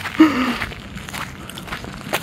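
A short voiced sound from a person, falling slightly in pitch, just after the start, then soft footsteps on grassy, earthy ground as someone walks.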